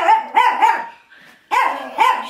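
Small dog barking, three short barks in quick succession. It is being chased to be put in its crate, which it knows is coming.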